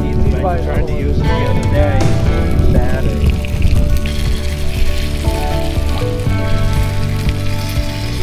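Lake trout fillets frying in butter in a cast-iron skillet, a sizzle heard under louder background music.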